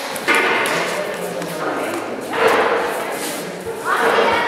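Several people's voices in a large, echoing hall, with drawn-out vocal phrases starting shortly after the beginning and again midway.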